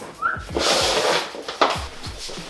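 Handling noise as a plastic rod holder is fitted onto an inflatable float tube: a short squeak, then about a second of rough scraping and rustling, ending in a sharp click.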